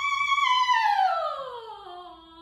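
Solo operatic soprano voice holding a high note, then sweeping down in a long descending line that grows softer, settling on a quiet low note near the end.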